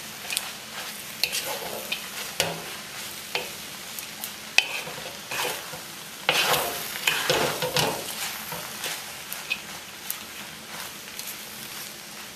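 Noodle stir-fry sizzling in a wok on high heat as a wooden spatula tosses it, scraping and knocking against the pan. The tossing is busiest and loudest a little past the middle.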